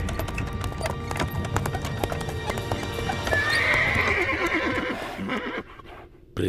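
Chariot horses in a cartoon soundtrack: hooves clip-clopping with a horse whinnying about three and a half seconds in, over background music that fades near the end.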